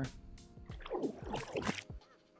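Water splash sound effect played in reverse, so it sounds like rising back up out of the water: a growing cluster of sweeping, bubbly pitch glides that starts about half a second in, is loudest in the second half and stops just before the end.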